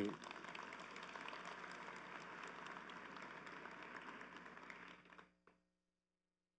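Audience applause in a large hall, faint, dying away about five seconds in.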